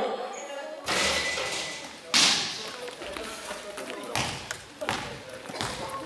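A handful of irregular thuds ringing in a large gym hall, a basketball bouncing on the court floor; the loudest comes about two seconds in.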